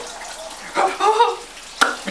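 Shower water running with a steady faint hiss. A short burst of voice comes just under a second in, and a single sharp click comes near the end.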